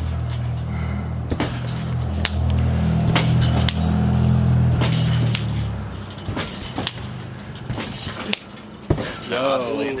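A spring trampoline being bounced on: repeated thumps on the mat with metallic spring jangle, roughly once a second. A low steady rumble runs underneath for the first half.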